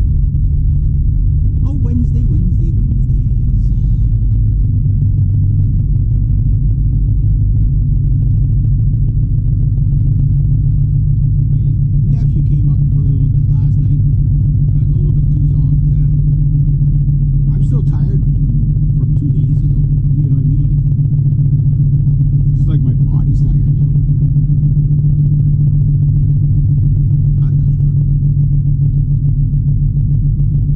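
Interior drone of a Honda Civic being driven: a steady low rumble of engine and road noise heard inside the cabin, with a few brief faint ticks now and then.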